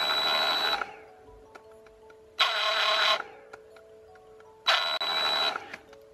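Parkside PSSSA 20-Li A1 20 V cordless jigsaw/sabre saw run in three short bursts of about a second each, with a steady high whine, as the trigger is squeezed gently to try its soft start.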